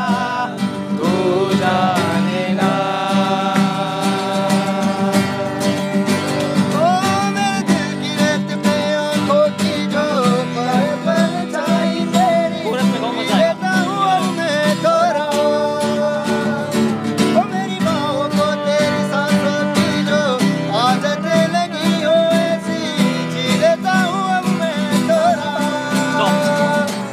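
A man singing a melodic song over strummed acoustic guitar chords, without a break.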